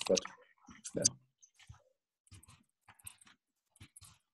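A brief spoken "but yeah," then a run of light, irregular clicks, several a second, heard over a video-call line.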